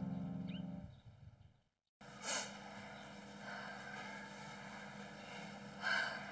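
Soundtrack music fades out in the first second and is followed by a brief silence. Then comes a faint, steady background hiss of ambience with two short whooshing swells, one early and one near the end.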